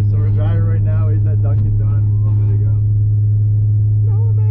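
A car cruising at steady speed, heard from inside the cabin: a loud, steady low drone from the engine and road that holds one pitch, with voices talking over it.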